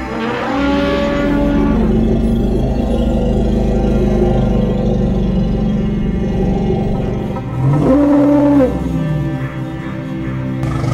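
Two drawn-out elephant calls: one about half a second in, and a louder one near the end that rises into a held tone, over background music.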